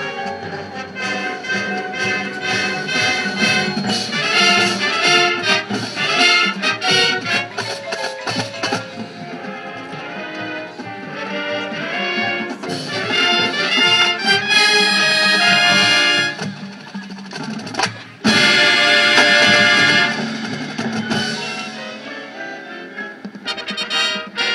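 High school marching band playing a competition show: brass chords over drums and front-ensemble percussion. About eighteen seconds in the music briefly drops away, then the band hits a loud held chord.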